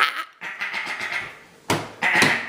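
Breathy, raspy voice sounds, quiet at first and louder again near the end.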